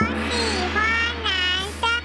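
A young child's voice saying 'I like boys' (我喜歡男生), in a high, drawn-out voice over a steady low drone that starts and stops abruptly.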